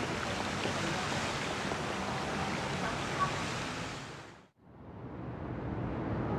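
Steady, even outdoor ambience that fades out to near silence about four and a half seconds in, then a second steady ambience fades back in.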